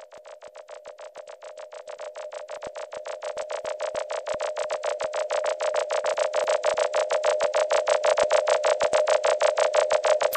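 Opening of an electronic track: a single synth tone pulsing rapidly and evenly, about seven pulses a second, swelling steadily louder.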